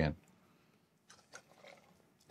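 Nearly silent room with a few faint, short clicks and small sounds, about a second in, as a hydrometer and its plastic sample tube are handled and emptied.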